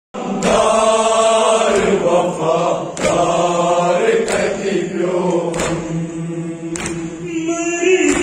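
Voices chanting a Kashmiri noha, a Shia mourning lament, in a slow sung line, with a sharp beat landing about every 1.3 seconds.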